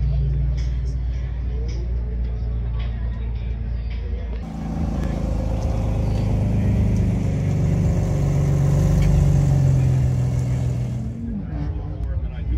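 Car engines idling steadily with people talking in the background. A cut about four seconds in brings a different idling engine whose hum swells for a few seconds and then eases off near the end.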